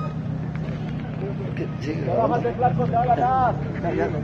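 Steady low hum of an idling vehicle engine. From about halfway through, several people talk over it.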